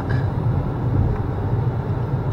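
Steady low road and engine rumble of a car driving at speed, heard from inside the cabin.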